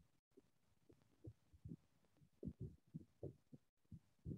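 Near silence on an online call, broken by faint, irregular low bumps every half second or so.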